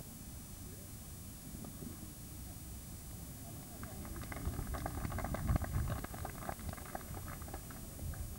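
Indistinct voices talking near the camcorder, starting about halfway through and loudest in the middle, over a steady low rumble. No words can be made out.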